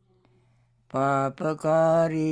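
A voice chanting a line of Pali verse in long, held recitation tones, starting about a second in after a moment of near silence.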